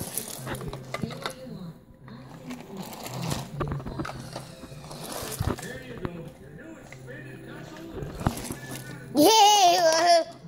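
Indistinct, muffled voices at a low level, then near the end a loud, high-pitched voice for about a second.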